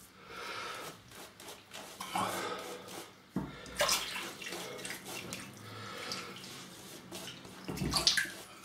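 Maseto 24mm badger shaving brush working wet soap lather over a face: soft, irregular wet brushing strokes.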